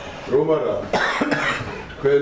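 A cough about a second in, among a man's voice talking in a small room.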